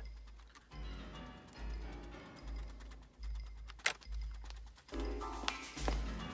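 Film score built on a low bass pulse that repeats a little under once a second, with faint computer-keyboard clicking and one sharp click about four seconds in. Higher pitched tones come in near the end.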